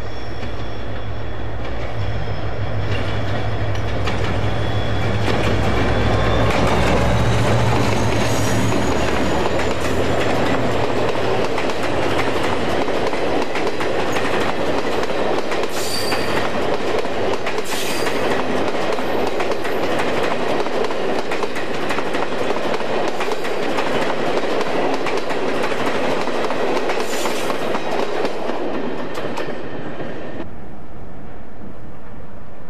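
A diesel-hauled passenger train passing close at speed. The GM diesel locomotive's engine throbs loudly through the first ten seconds or so as it approaches and goes by. After that comes the steady rush and clatter of the coaches' wheels on the rails, with a few sharper clanks.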